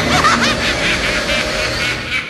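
A woman's evil cackle from a film soundtrack: a fast run of short, high laughs, several a second, without a break.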